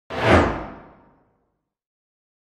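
A single whoosh sound effect accompanying an animated logo intro: it swells in sharply just after the start and fades away within about a second, the higher part fading first.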